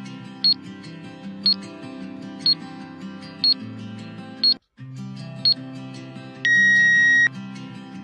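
Background music with a short, sharp high tick once a second from a quiz countdown timer, six ticks in all, broken by a brief dropout about halfway. Near the end comes a loud, steady electronic beep lasting under a second, signalling that the time is up and the answer is revealed.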